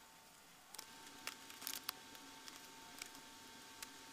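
Quiet hand-sewing: faint scattered clicks and rustles of a needle pushed through fabric with a leather thimble, the loudest a short cluster a little under two seconds in. A faint steady hum starts up under a second in.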